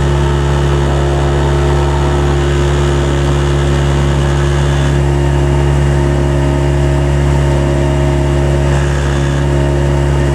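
Outboard motor of a coaching launch running at a steady, even speed, with a strong low hum that does not change.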